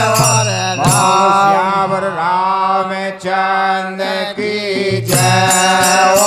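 A Bundeli ramdhun: a group of men singing a Hindu devotional chant over a harmonium. The dholak and jingling hand percussion stop about a second in and come back near the end.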